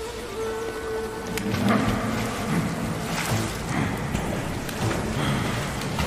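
Rushing water from a waterfall and stream, with repeated splashes of someone running through shallow water, under dramatic background music.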